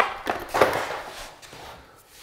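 A sharp click, then a few short scraping rubs that fade away: a handheld stud finder pressed to the drywall and slid along it above the baseboard, locating studs to pry the baseboard against.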